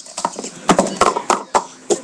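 Speed Stacks plastic cups clacking against each other and on the mat as they are stacked and unstacked fast, a quick uneven run of sharp clacks.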